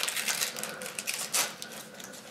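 Wrapping paper crinkling and tearing as a small gift is unwrapped: a run of quick, irregular crackles with one louder crackle about one and a half seconds in.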